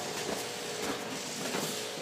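Steady room hiss with a faint steady hum and a few soft knocks from someone walking on carpet while handling the camera.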